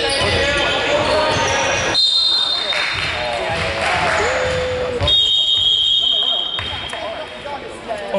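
Indoor basketball game: a ball bouncing on the court and players calling out in a reverberant gym. Two shrill, steady signal tones sound, a short one about two seconds in and a longer one about five seconds in, as the quarter's clock runs out.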